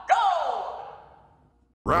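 A fighting-game-style announcer voice calling "Go!", its pitch falling as it trails off over about a second. Near the end the same voice starts the next call, "Round 1".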